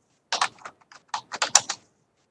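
Typing on a computer keyboard: a quick, uneven run of about ten keystrokes.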